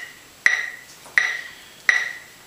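Electronic metronome beeping steadily at 84 beats per minute, three short pitched beeps.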